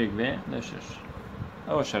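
A man's voice in short hesitant syllables at the start and again near the end, over a steady low buzzing hum.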